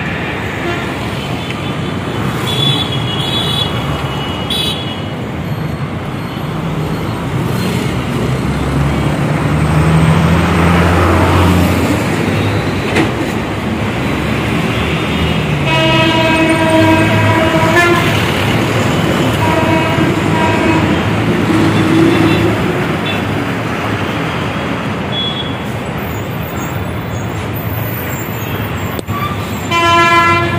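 Busy city road traffic: a steady noise of passing vehicles, with a heavy engine rumbling past around the middle. Vehicle horns honk over it: short toots a few seconds in, a longer blast of about two seconds past the halfway point, and another a few seconds later.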